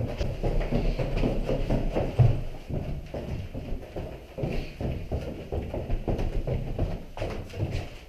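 Footsteps going quickly down the stairs of a stairwell, an irregular run of steps, heavier in the first few seconds.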